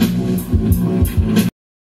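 Hip hop beat playing with no vocals: a steady bass line under regular drum hits and crisp high cymbal strokes, cutting off suddenly about one and a half seconds in.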